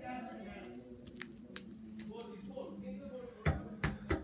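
Wet slime being worked and pulled off hands, with a few small sticky clicks. Near the end come two sharp, loud knocks close together.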